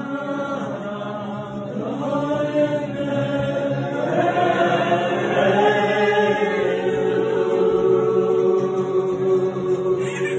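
A group of men singing together, a choir song led by the elderly choir conductor, who sings along and beats time with his hands. The singing grows louder after about two seconds and ends on long held notes.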